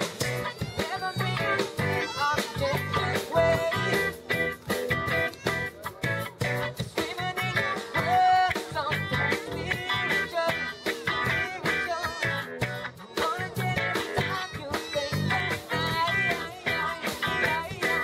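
A live band playing a song with a steady beat: electric guitar, bass guitar, drums and keyboard.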